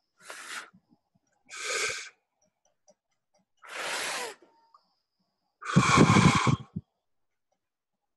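Breath blown out through pursed lips in four separate puffs, each under a second long, the last the loudest and longest.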